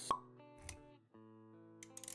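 Intro sound effects over music: a sharp pop just after the start and a short low thump about half a second later. Then held musical notes begin about a second in, with small clicks near the end.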